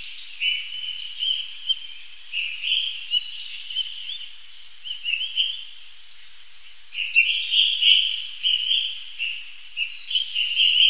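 Small birds chirping and calling in quick, overlapping high notes, busier and louder from about seven seconds in.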